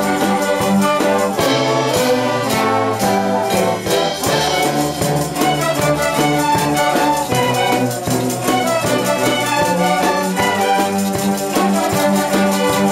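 Youth orchestra playing an orchestral piece, bowed violins and cellos with wind instruments, at a steady level with notes changing continuously.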